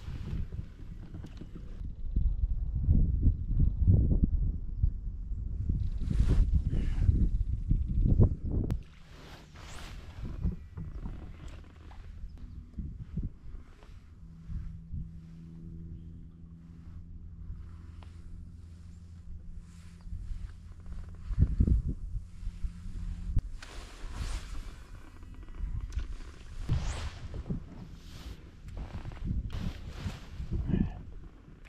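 A low rumbling noise for the first several seconds, then a steady low electric hum from the boat's bow-mounted trolling motor for about ten seconds, with scattered knocks and clicks.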